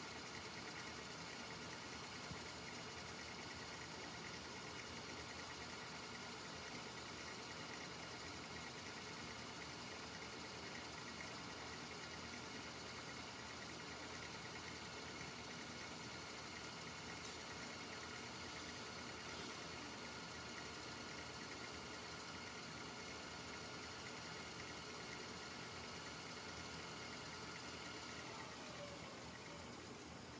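VHS tape rewinding in a DVD/VCR combo deck: a faint, steady motor whir with several high whining tones, which slide down in pitch near the end.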